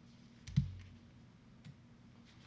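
Trading cards being handled on a tabletop: one sharp click with a dull knock about half a second in, and a fainter click about a second later.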